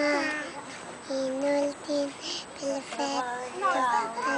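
A young girl singing unaccompanied: a string of short notes held on a steady pitch with brief breaks between them, turning to quicker rising and falling notes near the end.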